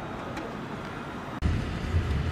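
Quiet outdoor background with a faint click, then about one and a half seconds in a sudden switch to the steady low rumble of road and engine noise inside a Honda Accord's cabin as it is driven.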